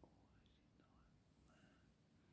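Near silence, with faint whispering now and then.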